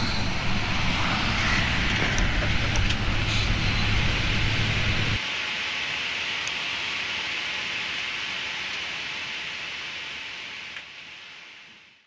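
Steady jet airliner noise on the apron, a low hum under a broad hiss. About five seconds in it cuts to a quieter, steady hiss inside the cockpit that fades out near the end.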